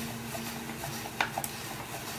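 Hand-cranked spiralizer cutting a zucchini into noodle strands under light pressure: a soft, steady rasp of the blade slicing, with a couple of small clicks a little past a second in.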